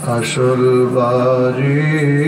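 A man chanting an Arabic devotional hymn in long, drawn-out held notes, stepping up in pitch near the end.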